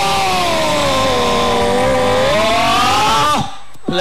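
One long drawn-out amplified call, sliding slowly down and back up in pitch, over loud crowd noise. It cuts off suddenly about three and a half seconds in.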